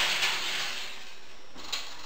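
Oven being loaded: a sharp metal clatter and a scraping slide as the pan goes in on the oven rack, fading over about a second, then a short knock near the end as the oven door shuts.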